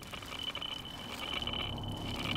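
A cartoon energy-detecting gadget (the Mondo meter) giving a steady high electronic tone that swells and fades, over a low hum that grows louder near the end.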